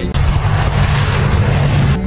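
Jet aircraft engine noise: a loud, steady rushing roar over a low hum.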